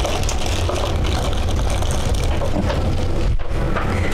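A steady low rumble with hiss over it, even throughout, with no distinct knocks or clicks standing out.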